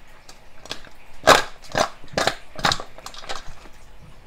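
Crisp kitchen food-preparation strokes, a run of about four strong ones roughly two a second in the middle, with a few lighter ones around them.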